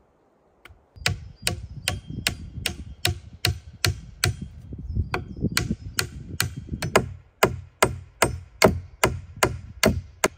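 Axe chopping into a log with quick, evenly paced strikes, about two and a half a second, starting about a second in.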